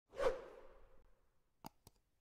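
A whoosh transition sound effect that swells quickly and fades over about a second, followed near the end by two quick clicks.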